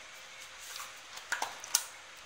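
A small paperboard screen-protector box being handled and opened: a few short cardboard clicks and scrapes, the sharpest near the end.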